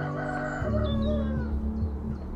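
A rooster crows once, a drawn-out call that falls in pitch at its end, over background music with sustained low notes.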